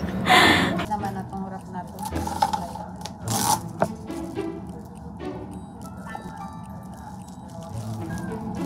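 Plastic cling wrap crinkling as it is lifted and folded over the food, loudest in two short bursts: just after the start and about three and a half seconds in. Quiet background music plays under it.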